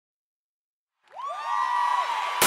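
Silence for about a second, then several overlapping swooping tones that rise and level off into a held note, the start of a music intro.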